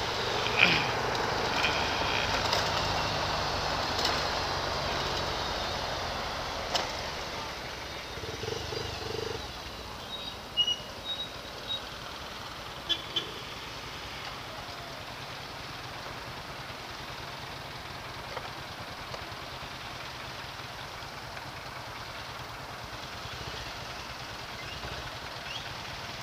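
Motorcycle riding noise of wind and engine, loudest at first and dying down over the first ten seconds as the bike slows to a stop. It settles into a steady low hum of idling traffic, with a few short high chirps about ten seconds in.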